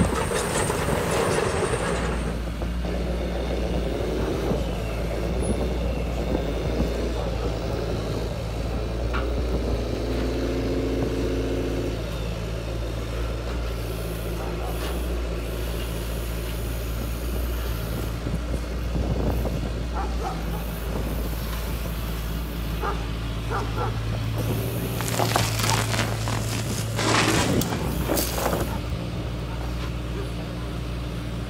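Heavy RC model excavator running, its motors and hydraulic pump giving a steady low hum with a brief whine partway through. Gravel rattles and pours in bursts near the start and again near the end.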